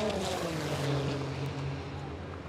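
A race car's engine going by, its note falling steadily in pitch over about two seconds.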